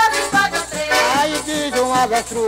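Pastoril band music playing a lively melody over a steady, evenly spaced percussion beat, with no voice on top.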